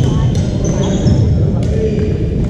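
Sharp hits of a racket-sport rally, a few in the two seconds, with short high sneaker squeaks on the hardwood gym floor. Voices from other courts echo through the hall beneath.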